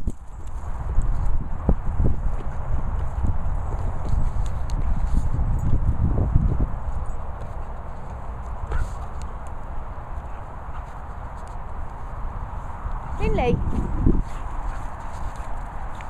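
Dogs running and playing on grass: irregular paw thuds and low rumbling noise on a handheld microphone, with a brief wavering call about thirteen seconds in.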